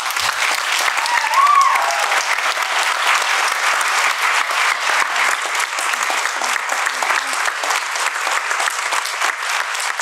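Audience applauding, starting suddenly and keeping an even pace, with one person's short rising-and-falling call about a second in.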